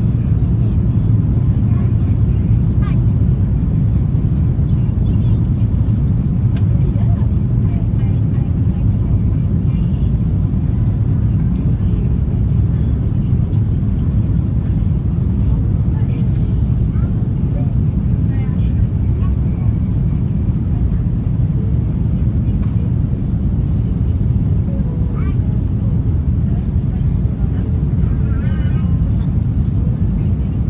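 Steady low rumble of cabin noise inside an Airbus A330 airliner on approach: engine and airflow noise heard through the fuselage, holding an even level throughout.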